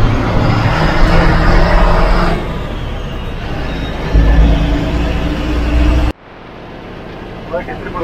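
Ashok Leyland tourist bus running along a town road, heard from on board: steady engine and road noise, with a low rumble swelling about four seconds in. The sound drops off sharply about six seconds in to a quieter cab hum, and a man starts talking near the end.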